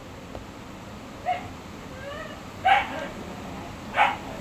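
A few short, high-pitched animal calls: one about a second in, a faint thin whine around two seconds, a louder call near three seconds, and another at the very end.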